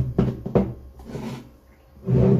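Steel tube RC rock bouncer frame being handled on a desk: a few sharp knocks and clunks in the first half second, then softer handling and rubbing about a second in.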